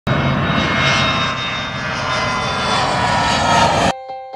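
Jet airliner engines running loud and steady, with a high whine over the roar, cutting off suddenly just before the end.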